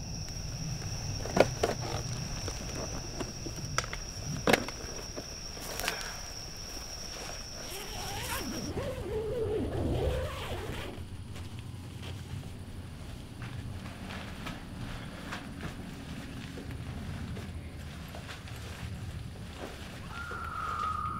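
Crickets chirring steadily in a night woodland, with a few scattered knocks and rustles, until the chirring cuts off about nine seconds in. After that only a low steady background rumble remains.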